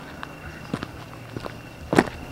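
Footsteps walking on a dry dirt trail scattered with small stones and grit: about four crunching steps, the last one, near the end, the loudest.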